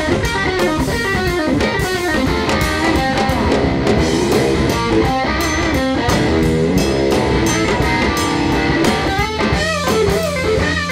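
A live blues band plays an instrumental passage: a lead electric guitar plays bending notes over electric bass and drum kit.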